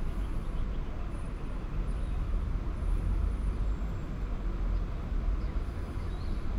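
Outdoor city ambience: a steady low rumble of distant road traffic.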